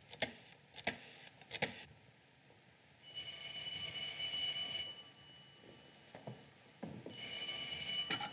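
Telephone bell ringing twice for an incoming call, each ring just under two seconds long, the first about three seconds in and the second about seven seconds in. A few soft clicks come before the rings.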